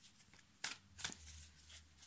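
Tarot cards being shuffled by hand: quiet, brief papery rustles, the two clearest a little past the middle.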